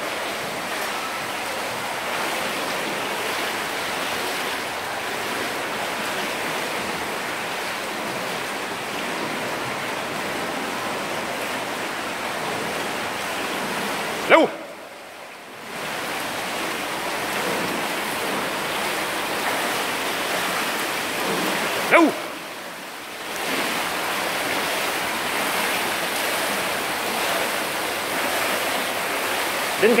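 Steady rushing splash of swimmers stroking through the water of an indoor pool, broken twice by a short shout, each followed by a brief lull.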